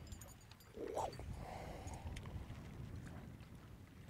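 Faint wind and water noise on an open boat on choppy water, with one brief faint sound about a second in and a few light ticks.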